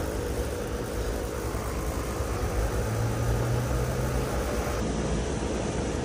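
Lennox outdoor AC condenser unit running: a steady whir of the condenser fan and compressor with a low hum that swells for a couple of seconds in the middle.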